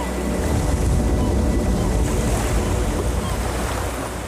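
Sea surf: a steady rush of waves with a deep rumble underneath.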